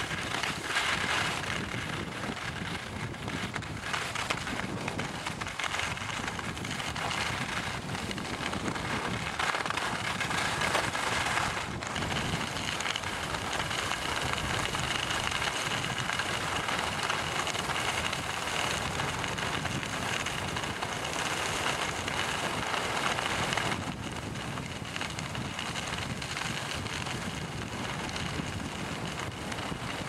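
Wind rushing over the camera microphone during a downhill ski run, with the steady hiss and scrape of skis sliding on packed snow; it eases a little for the last few seconds.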